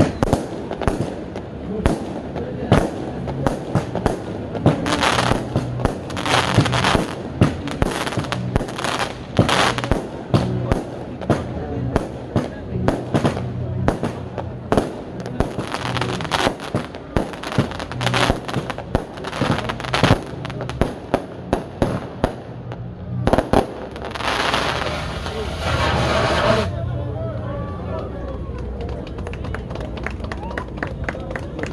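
A long string of firecrackers going off in rapid, irregular cracks. Near the end the cracks stop and a loud hiss lasts about three seconds.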